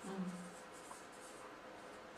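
Marker pen writing on flip-chart paper: faint scratching strokes as a word is written.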